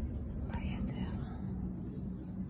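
A person speaking quietly close to the microphone, briefly, about half a second in, over a steady low rumble.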